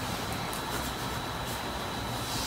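Steady room background noise, a low hum and hiss with a faint, thin high whine, with no speech.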